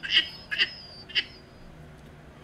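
A man laughing hard: three short, high-pitched bursts of laughter in the first second and a half, then it dies away.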